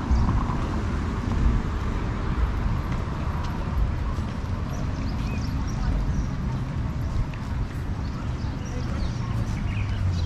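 Outdoor ambience along a busy seaside road heard on a walking action camera: a steady low rumble of wind and traffic, with faint voices and scattered faint high chirps.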